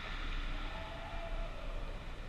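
Steady background hum and hiss of an indoor ice rink arena, with a faint thin tone through the middle.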